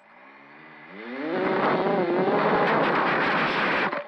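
Mini quadcopter's Emax RS2205 2300kv brushless motors with 5040 props spooling up in a rising whine over about the first second, then running loud at high throttle. The sound cuts off suddenly near the end.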